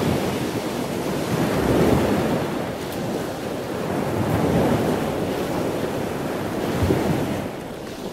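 Ocean surf breaking and washing up a sandy beach, a steady rushing that swells and eases with the waves, with wind buffeting the microphone. It fades out near the end.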